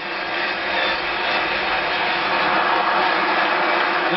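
Football stadium crowd cheering after a goal, a steady wash of noise, heard through a television's speaker.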